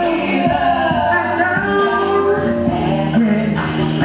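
A live performance of a song: sung vocals holding long, sustained notes over the music.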